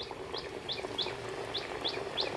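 Hot oil sizzling in an iron wok as pieces of biscuit dough fry, with a bird chirping over it, about three short chirps a second.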